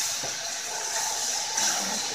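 Tomato sauce sizzling in a hot skillet of oil-toasted rice, a steady hiss, with a few light scrapes of a wooden spoon stirring.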